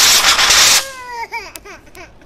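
Handheld fire extinguisher discharging in a loud, steady hiss that cuts off abruptly under a second in. A toddler then cries in short, wavering wails.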